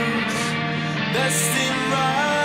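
Alternative rock music from a band with guitars.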